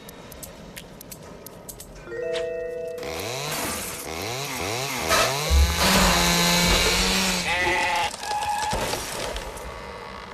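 Cartoon sound effects: a warbling sound that swoops up and down in pitch several times, then a loud buzzing stretch lasting a couple of seconds, over background music.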